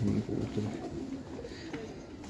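Domestic pigeons cooing softly.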